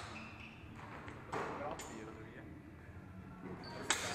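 Rustle and scuffing of fencers moving, then a sharp clack of steel training longswords meeting near the end.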